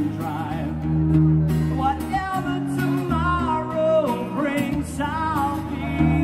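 Live acoustic guitar strummed in steady chords while a man sings a melody over it, from about two seconds in.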